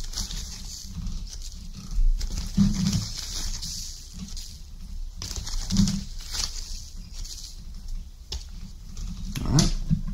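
Plastic zip-lock bag crinkling in short bursts and a metal spoon scraping as potassium nitrate and sugar powder is spooned into it on scales, with a few short low sounds in between.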